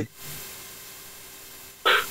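A pause in conversation with steady hiss on the video-call line, followed by a brief sharp sound near the end.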